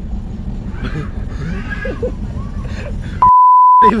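A single censor bleep: one steady high-pitched tone lasting under a second, about three seconds in, with all other sound cut out while it plays. Before it, the rumble of a moving train coach.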